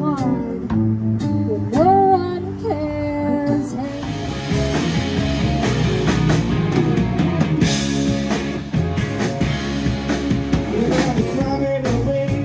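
Live amplified street music. First a small duo plays electric and acoustic guitar over a kick drum, with clear sliding notes. About four seconds in it changes to a fuller rock band sound with a drum kit and electric guitars.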